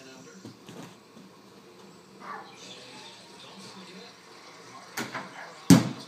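A small ball knocking against a plastic toy basketball hoop and dropping to the floor: two sharp knocks near the end, the second louder.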